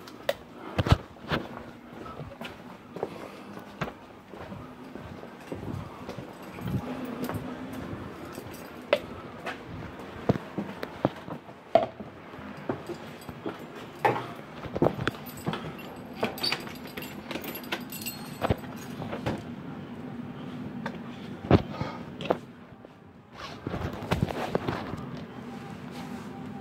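Irregular sharp knocks and clicks over a low steady hum, like a phone being handled and carried about.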